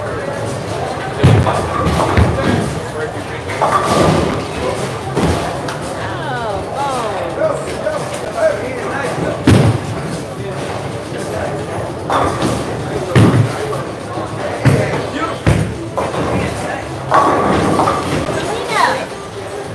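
Bowling alley sound: repeated sharp knocks and crashes of bowling balls and pins across the lanes, about ten spread through, over background chatter.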